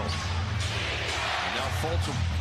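Arena crowd noise in a steady wash, with a basketball bouncing on the hardwood court as it is dribbled up the floor.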